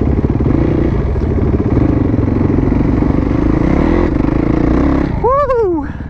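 Yamaha WR450F supermoto's single-cylinder four-stroke engine running at low revs on a wavering throttle, heard close up from the rider's helmet. A person gives one short shout near the end.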